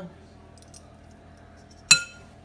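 A metal spoon strikes the rim of a glass mixing bowl once near the end: a single sharp clink that rings briefly. Before it there is only a faint steady hum.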